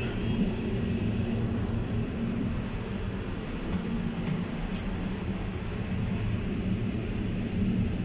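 Passenger train carriage rolling along the track, heard from inside: a steady low rumble.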